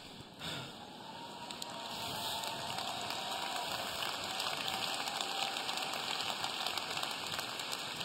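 Large audience applauding and laughing, swelling over the first couple of seconds and then holding steady.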